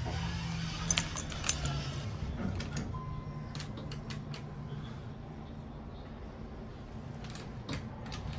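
Steady low electrical buzz from a Dover-built hydraulic elevator, the 'Dover buzz', with scattered sharp clicks and a short steady beep about three seconds in.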